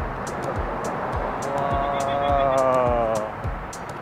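Wind and rolling noise on a moving rider's camera, with a regular run of short ticks and low thumps, about three or four a second. In the middle a held, slightly falling pitched tone lasts about two seconds.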